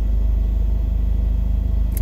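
A car engine idling, heard from inside the cabin: a steady low hum that does not change.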